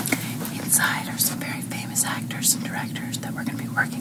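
Whispered speech in short hissy bursts over a steady low hum of room or recorder noise.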